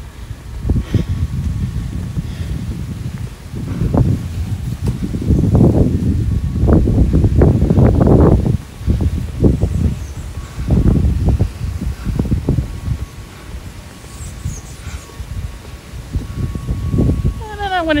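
Wind buffeting a handheld microphone outdoors: an irregular low rumble in gusts, strongest from about four to nine seconds in.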